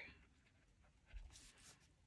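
Faint scratching of a Tombow Fudenosuke brush pen tip on a planner page as a word is written, the strokes coming a little over a second in against near silence.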